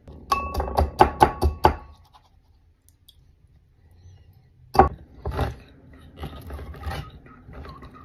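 Kitchen handling noises: a quick run of about seven sharp metallic knocks with a brief ringing as a tin can of peaches is tipped and knocked against a mesh strainer to empty it. After a pause comes one hard thunk, then a string of small irregular clicks from a hand-held can opener gripping and working round a can.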